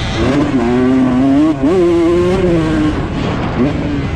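A 125cc two-stroke motocross bike's engine revving under the rider, pitch climbing hard with a brief break in the sound about a second and a half in, then held, easing off around three seconds and picking up again near the end.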